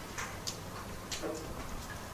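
Faint room noise with a few soft, irregularly spaced clicks and a brief faint tone a little after the middle.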